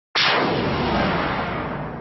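A single sudden loud burst of noise, like a blast or boom, that hits just after the start and fades away slowly over about two seconds: an intro sound effect ahead of the song.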